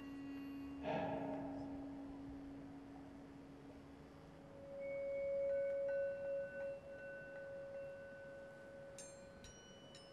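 Sparse, slow vibraphone improvisation. A low note rings on for several seconds, and a struck note with many overtones sounds about a second in. From about four and a half seconds in a sustained metal tone swells up, wavers and fades slowly, the way a bowed bar sounds. A few small, high metallic clinks ring out near the end.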